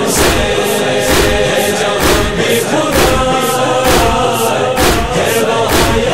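Noha interlude: a male chorus chanting over a steady percussive beat of about two strikes a second.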